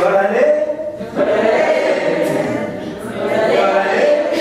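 A group of voices singing a chant together in unison, with a single sharp clap about a second in.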